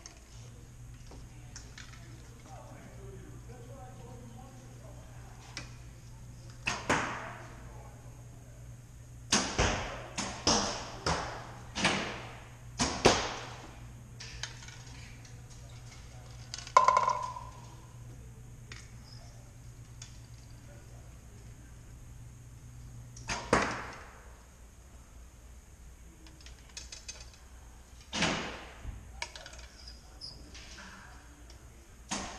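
Bows being shot at an indoor archery range: sharp string releases and arrow strikes, about eight in all, five of them in quick succession in the middle, each echoing briefly in the hall.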